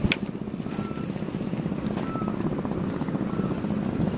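Strong wind buffeting the microphone, a steady low rumble, with a sharp click right at the start.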